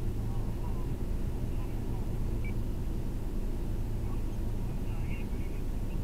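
Steady low rumble of a Mercedes-Benz taxi idling while stationary in traffic, heard from inside the cabin, with faint snatches of a radio voice a couple of times.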